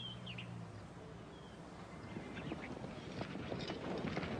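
A few short, high bird-like chirps over a low hum that stops about a second in, then the hoofbeats of approaching horses growing louder through the last second or two.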